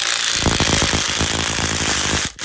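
Cordless drill with a hex bit running a chainring spider bolt into a Tongsheng TSDZ2 mid-drive motor, with a fast even rattle setting in about half a second in.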